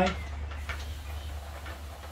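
Hand pump sprayer spraying water onto a bicycle's rear cassette: a faint hiss with a few light ticks.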